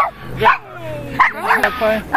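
A dog whining and yipping on the leash: a run of short, high cries with one longer cry that falls in pitch in the middle.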